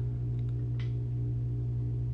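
Steady low hum made of several constant tones, unchanging throughout.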